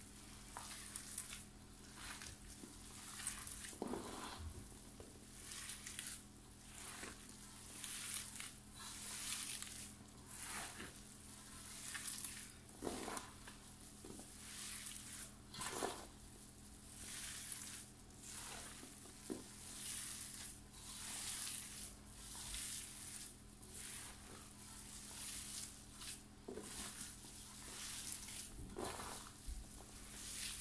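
Hands kneading an oily bulgur-and-mince çiğ köfte mixture against a dimpled stainless steel tray: faint wet squishing and rubbing strokes, irregular, every second or two, with the olive oil just worked in.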